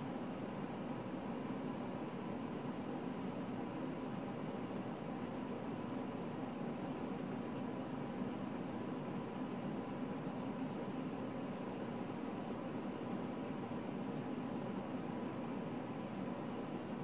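Steady background hiss with a faint constant hum, unchanging throughout; no distinct handling sounds stand out.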